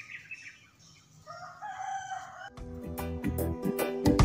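A rooster crows once, faintly, about a second in, after a few quick chirps of small birds. About two and a half seconds in, background music with a beat starts abruptly and is louder than everything before it.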